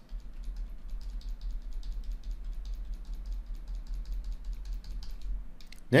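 Computer keyboard's down-arrow key tapped repeatedly in a quick, even run of clicks, with Alt held down. A steady low hum lies underneath.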